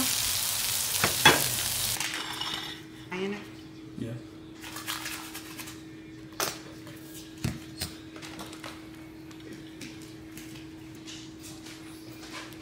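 Grease sizzling on a Blackstone flat-top griddle for about the first two seconds, cut off abruptly. Then comes a quieter stretch with a steady low hum and a scattered handful of light taps and clicks.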